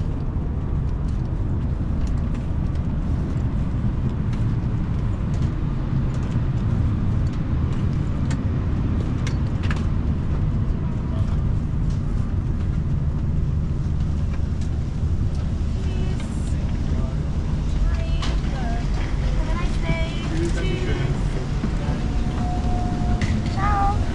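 Steady low rumble inside a parked Airbus A330-900neo airliner cabin as passengers file out, with faint clicks and rustles. Murmured voices come in during the last few seconds.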